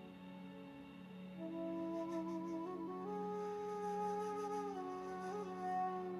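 Soft background music: a slow, flute-like melody of long held notes over a steady low drone, the melody coming in about a second and a half in.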